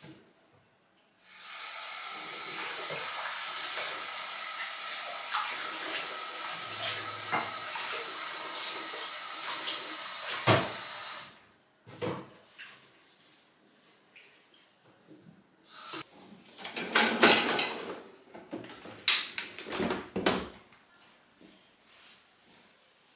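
Kitchen tap running steadily for about ten seconds while a glass and a tea infuser are rinsed under it, with a sharp knock just before the water shuts off. Then several short knocks and clatters, loudest a little past the three-quarter mark.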